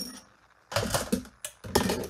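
Plastic cutting plates and a die from a small hand-cranked die-cutting machine being handled and pulled apart, with paper rustling. There are two short bursts of clattering and scraping, one about a second in and one near the end.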